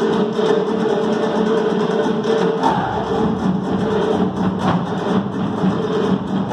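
Caucasian folk dance music with frame drums beating a fast, driving rhythm over a steady sustained melody; a deeper drum comes in a little under halfway through.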